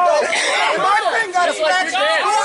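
Several men talking loudly over one another at close range, an unbroken jumble of voices.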